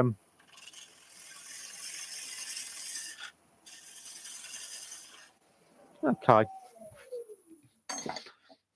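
Bowl gouge cutting the face of a wooden blank spinning on a lathe: a steady hiss of shavings in two passes with a short break between. About six seconds in, the lathe motor's whine falls steadily in pitch as the machine spins down.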